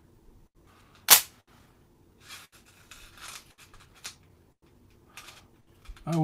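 Fly-tying scissors and hands working at a fly in the vise: one sharp snip-like click about a second in, then soft rustling and two lighter clicks.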